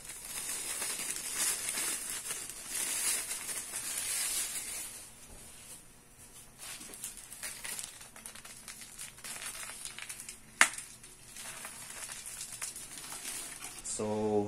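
Plastic bag crinkling as white sugar pours from it into a large aluminium pot of hot water, the falling sugar making a hiss that is strongest in the first few seconds. A single sharp knock a little past ten seconds in.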